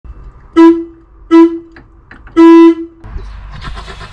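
VW T2 bus horn sounded three times from the steering wheel: two short toots and then a longer blast, all on one steady note. A rushing noise follows near the end.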